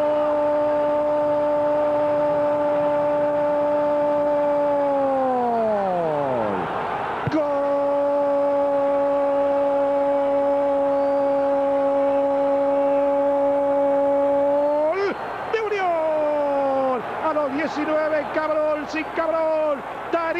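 A football commentator's long goal cry, one high note held without a break for about six seconds and then sliding down. After a breath, a second held note runs about eight seconds, then drops away into short excited calls near the end.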